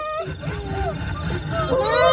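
A wavering, wailing voice-like sound that swells near the end into a loud, long held wail.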